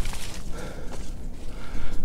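Footsteps through light snow on the forest floor, irregular and soft, over a low rumble of handling noise from a handheld camera being carried.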